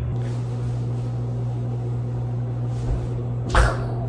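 A steady low hum, with a brief whoosh about three and a half seconds in.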